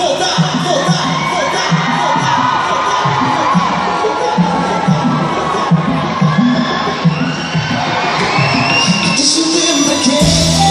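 Concert crowd cheering and shouting, many voices at once, over music with a steady bass beat from the PA.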